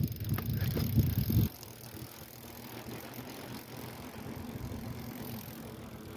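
Bicycle riding down a steep hill: rough rolling rumble with knocks for about the first second and a half, then a quieter steady rolling noise.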